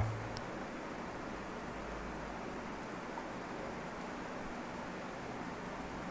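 Steady, even background hiss of room tone and microphone noise, with no distinct events.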